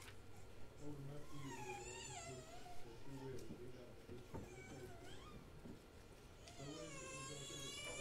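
A young child's high, wavering cries, twice: once around two seconds in and again near the end. Underneath, a man's low voice leads a prayer.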